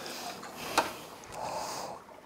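Aquarium return pump switched back on, sending water rushing and hissing through the sump and overflow drain. A click comes a little before one second in, and the rush stops abruptly at the end.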